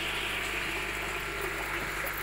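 Water pouring steadily from an inlet pipe into a fish tank, a constant splashing rush.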